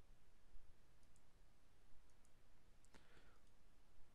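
Near silence with a few faint, sparse computer mouse clicks.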